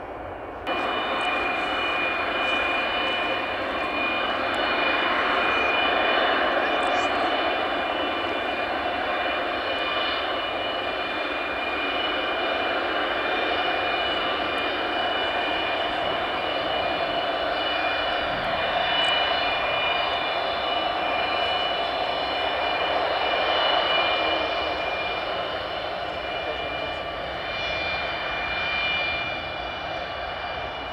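The four Progress D-18T turbofan engines of an Antonov An-124-100M running at high power as the jet moves along the runway for takeoff: a steady, loud jet noise with a high whine held over it. The sound jumps up sharply in level less than a second in.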